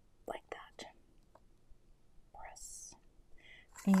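A few soft clicks and taps as a clear acrylic ruler is lifted off a card lying on a cutting mat, then a brief, soft, whispery hiss.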